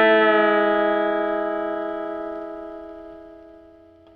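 Electric guitar double stop ringing out and fading steadily: the open first string sounding against a half-step bend held on the third string, a pedal-steel-style country lick in A.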